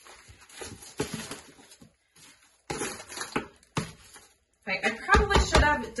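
A small hand rake scraping and pushing damp compost and torn newspaper around inside a plastic worm bin, with soft rustling and a few light knocks, as the bedding is pushed down over fresh food scraps.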